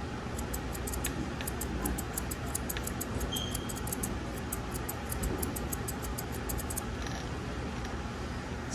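Straight grooming shears snipping through a Scottish Terrier's coat: short crisp clicks in quick succession, about three to four a second and often in pairs, that stop near the end, over a steady background hiss.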